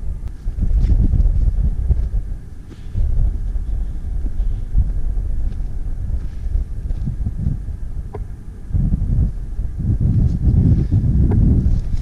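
Wind buffeting a small action camera's microphone in gusts: a loud, low rumble that swells and drops, easing briefly twice.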